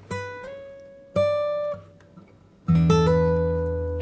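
Steel-string acoustic guitar, a Mayson MS7/S, fingerpicked slowly. A single high note on the high E string steps up in pitch just after it sounds, a louder high note is plucked about a second in and stops short, and a fuller chord with a bass note rings out from near three seconds in, one of its notes shifting up shortly after.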